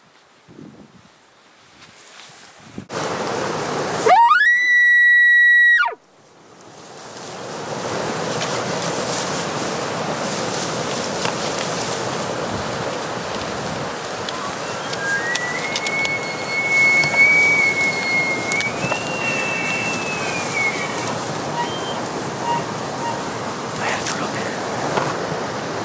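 Maral (Altai wapiti) stag bugling: a loud call that climbs steeply to a high, held whistle for about two seconds, then drops and cuts off suddenly. Later a fainter second bugle holds, rises and falls, over a steady rushing noise.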